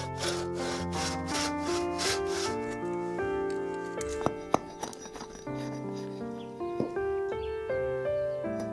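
Hand saw cutting through a thin wooden stick in quick back-and-forth strokes, about three to four a second, that stop about two and a half seconds in. Two sharp knocks follow about four and a half seconds in.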